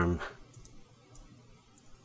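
A few faint clicks from a computer keyboard and mouse as shortcut keys are pressed and a transform handle is dragged.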